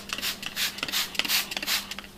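Hand trigger-spray bottle squirted rapidly again and again, spraying cleaner onto sofa fabric: a quick run of short hissing sprays, about four a second.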